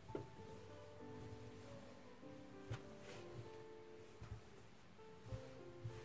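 Faint background music of soft, held notes changing pitch every half-second or so, with a few light taps and rustles from cotton fabric being handled on a table.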